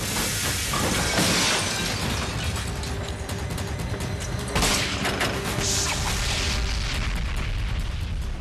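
Film background score with loud crashing sound effects, one about a second in and another about four and a half seconds in.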